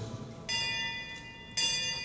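A bell struck twice, about a second apart, each stroke ringing on with a clear, bright tone. It is rung in honour of the inductee whose name has just been read.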